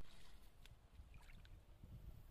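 Faint sloshing and small splashes of water around a person wading in a shallow river, with a few light ticks.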